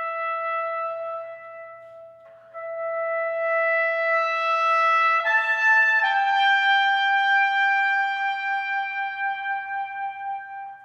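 Solo trumpet, a soloed part from an orchestral recording session, playing a very high line of long held notes. It holds one note, swells it louder in a crescendo, steps up higher about five seconds in, then settles on a long note that tapers near the end. The line sits at the top of a trumpet's range, which the players call very hard brass playing.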